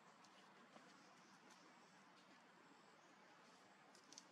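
Near silence: faint steady background hiss with a few faint, short clicks.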